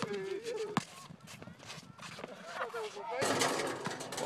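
A basketball being dribbled on an outdoor court, a run of short bounces, under faint voices of players; a rush of noise near the end.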